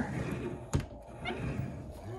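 A single short thump about three-quarters of a second in, over low room noise.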